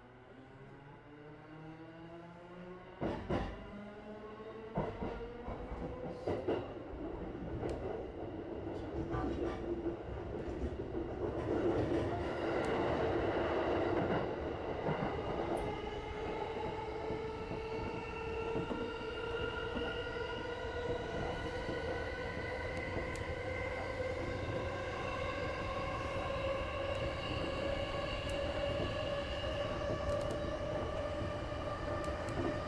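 JR East E233-series electric train pulling away and accelerating. The traction motors' whine rises steadily in pitch in several tones as the train builds speed, and the wheels click sharply over the points in the first ten seconds or so under a growing rail rumble.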